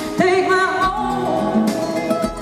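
A woman singing a slow ballad live into a microphone, with vibrato on held notes, over acoustic guitar accompaniment. Her voice comes in just after the start.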